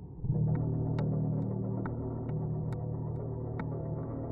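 A low steady hum that comes in suddenly about a quarter second in, with sharp ticks a little over twice a second.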